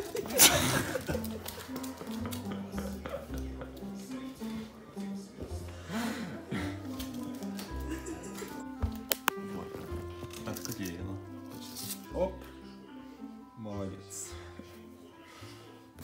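Background music with a melody of steady held notes, with a sudden loud noise about half a second in.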